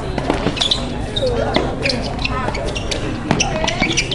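Tennis rackets striking the ball and the ball bouncing on a hard court during a doubles rally: a run of sharp, irregular pops, with voices in the background.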